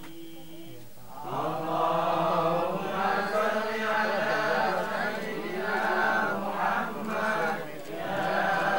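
A group of voices chanting Islamic prayers together (shalawat), starting about a second in.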